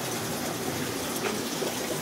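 Steady bubbling and running water from aquarium air stones and filters.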